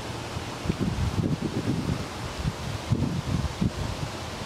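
Wind buffeting the microphone, an uneven low rumble that comes and goes in gusts.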